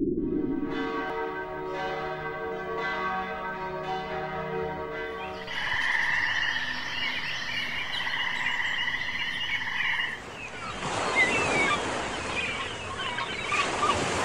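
A layered nature sound bed: a low rumble, then ringing chime-like tones struck about once a second. From about five seconds in comes a dense, trilling chorus of frogs. Near ten seconds this gives way to an even rushing wash like surf.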